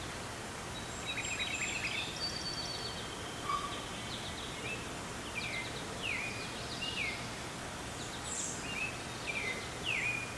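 Wild birds calling over steady outdoor background noise: a cluster of chirps about a second in, then short down-slurred calls roughly once a second through the second half.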